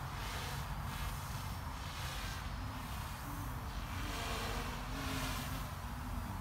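Steady outdoor background noise: a low rumble with an even hiss, with a faint steady hum coming in during the second half.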